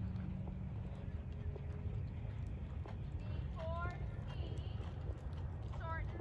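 Hoofbeats of a ridden horse on sand arena footing, over a steady low rumble, with a brief voice-like call a little past halfway.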